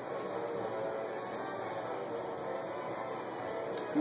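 Background music playing at a steady level.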